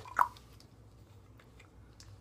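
A single short, sharp knock about a fifth of a second in as a tin of dip is handled close to the microphone, then only a low steady hum.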